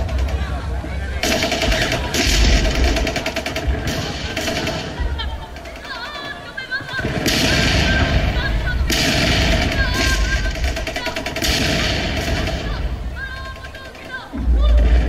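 Machine-gun fire from a battle sound-effects track, in about half a dozen rapid bursts of half a second to a second and a half each, over music.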